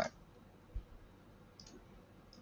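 A couple of faint computer mouse clicks over quiet room tone, with a soft low thump just under a second in.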